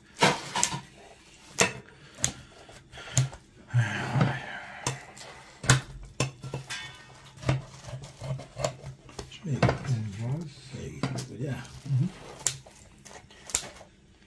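Kitchen scissors snipping through a baked pizza crust, with many sharp clicks and clinks of the blades and pizza on the plate.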